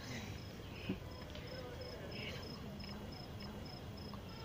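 A cricket chirping steadily, one short high chirp about three times a second, over faint background voices; a light tap sounds about a second in.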